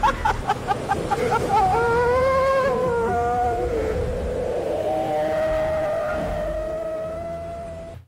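AI-generated monk's laughter trailing off in quick bursts, then a long wavering, voice-like pitched tone that slowly fades, over a steady low wash of crashing-wave ambience.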